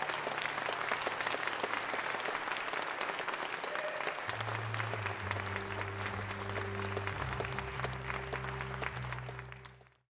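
Audience applauding at the end of a live song. About four seconds in, a low held note comes in under the clapping, and everything fades out at the very end.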